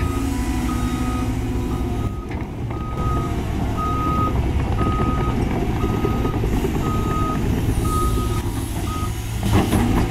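Reversing alarm beeping on one pitch about once a second, stopping near the end, over the steady rumble of a Cat 320GC excavator's diesel engine. A few sharp knocks come at the very end.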